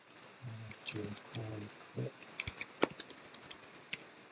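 Computer keyboard keystrokes: a run of quick, irregular key clicks, with the sharpest strike near the three-second mark.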